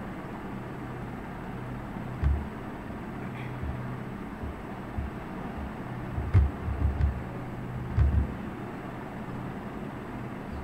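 Steady low electrical hum and background hiss from a home recording setup, with several soft low thumps scattered through the middle, the loudest near the middle and again near the end.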